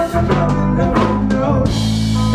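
Live band playing, with drum-kit strikes over held bass notes.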